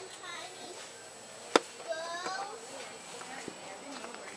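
Voices talking in a store, with a single sharp click about a second and a half in.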